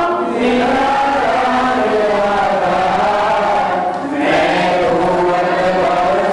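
Several voices chanting a devotional hymn together in long, drawn-out sung phrases, with a brief breath break about four seconds in.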